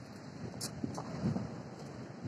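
Wind and storm surf on a stormy sea: a steady low rush, with a few faint clicks.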